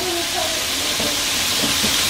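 Chicken frying in hot oil turned up high: a steady sizzling hiss.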